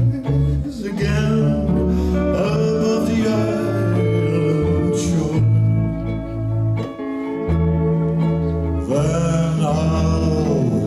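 Hawaiian band playing an instrumental passage: a lap steel guitar's sliding lead notes over guitar, bass and light percussion.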